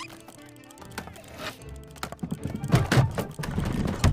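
Film score music, then a quick run of knocks and clatters from wooden barrels rolling and bumping over stone, loudest in the last second or so.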